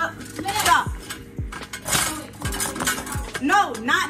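Kitchen utensils and a mixing bowl clinking and clattering in short irregular knocks, over background music with a steady beat and a few brief voices.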